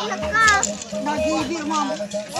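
Children's voices talking and calling out over crowd chatter, with a steady low tone held underneath.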